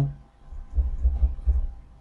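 A low, dull rumble with a few soft thumps near the middle, and no speech.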